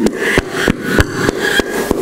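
Hands clapping in a steady rhythm, about three sharp claps a second.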